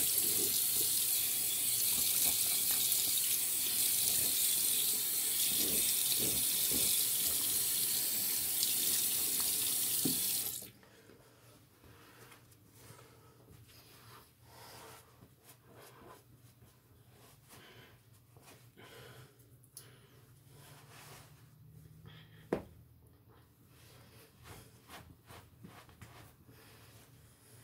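Bathroom sink tap running steadily while water is splashed on the face, shut off abruptly about ten and a half seconds in. After that, faint rustling as a towel is rubbed over the face, and one sharp click near the end.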